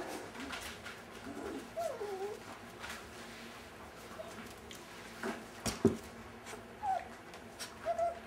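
Five-week-old Brittany puppies giving several soft, short whines that rise and fall in pitch, with a few knocks and scrapes as paws and claws hit the wooden pen board; the loudest knock comes about six seconds in.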